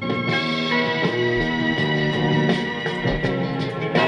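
Instrumental background music playing from a Seeburg 1000 disc on a Seeburg BMS1 background music machine, heard through its built-in speaker. The music is a melodic arrangement of sustained, changing notes.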